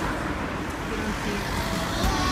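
Street ambience: steady traffic noise from passing cars, an even rumble and hiss.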